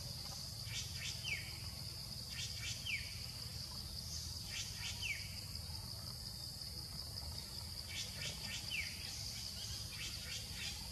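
Steady, high-pitched insect drone, with a bird calling four times, every two to three seconds: each call is a few short, high notes followed by a quick falling whistle.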